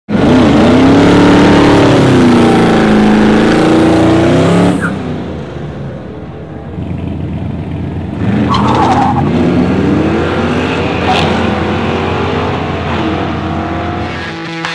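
A GM LS1 V8 in an LS-swapped Rambler, loud and revving with the pitch swinging up and down, cut off abruptly about five seconds in. After a quieter stretch, the engine pulls hard off the line about eight seconds in. Its pitch climbs and drops again and again as it accelerates through the gears down the drag strip.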